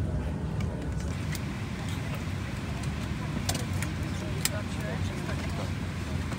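Steady low rumble of an airport apron shuttle bus driving across the tarmac, heard from inside, with a few sharp clicks or rattles about three and a half and four and a half seconds in.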